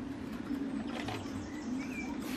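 Outdoor ambience: a steady low hum, with a few faint bird chirps near the end.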